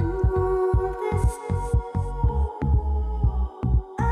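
Background music: held synth chords over a fast, pulsing low bass beat.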